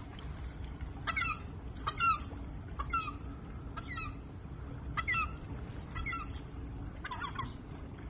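Gulls calling overhead: about seven short, sharp calls, roughly one a second, from adult gulls whose chicks a mink has just taken from the piling.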